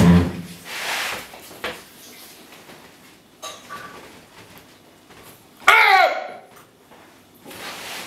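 A glass wine bottle set down on its side on a wooden table with a low thump, then soft rustling of hands handling it. About six seconds in, a short vocal sound from a person that falls in pitch.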